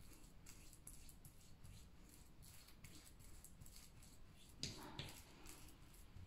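Faint, scattered taps and squishes of a fork mashing a banana on a chopping board, with a slightly louder knock near the end.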